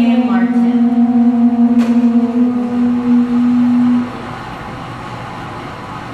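Several conch shells (pū) blown together in one long held note that cuts off about four seconds in, a ceremonial call heralding the entrance of a royal court.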